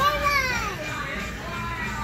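A small child's high squeal that rises and then falls in pitch, lasting under a second, over background music.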